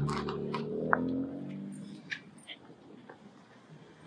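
Street traffic: a car engine hum fading away over the first couple of seconds, with a few light clicks and a brief high chirp about a second in.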